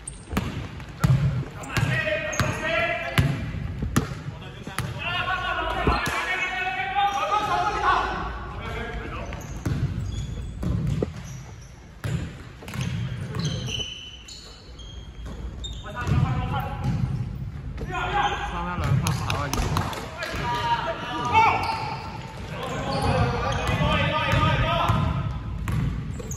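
Basketball bouncing on a wooden gym court with sharp knocks through the play, under voices calling out during a game.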